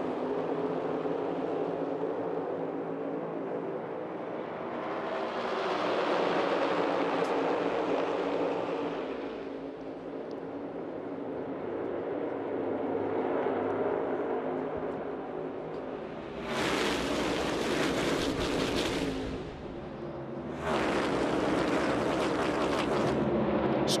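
A two-wide pack of NASCAR Cup Series stock cars with pushrod V8 engines runs at full throttle, building speed on the opening lap. The drone swells and fades as the pack passes, then turns suddenly louder and brighter about two-thirds in and again near the end.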